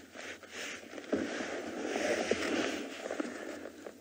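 Dry grass rustling and scraping as a male leopard drags a heavy warthog carcass through it. The rustle grows louder about a second in, then eases off near the end.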